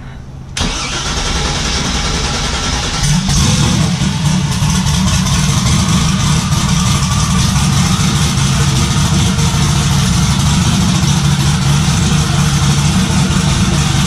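Twin-turbo resleeved 427 V8 of a C5 Corvette, freshly built and not yet tuned, starting about half a second in, its note filling out about three seconds in, then idling steadily at around 1,100 rpm. Heard from inside the car's cabin.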